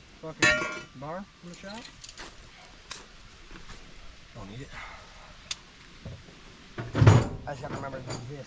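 Indistinct men's voices in short snatches, loudest about seven seconds in, with a few light metallic clicks and clinks between them from hand work on the fence.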